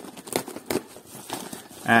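Bubble-padded plastic mailer and the plastic-wrapped packing inside it crinkling and rustling in irregular crackles as they are handled and pulled apart.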